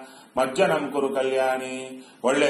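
A man's voice chanting a verse in a held, intoned pitch, starting about half a second in.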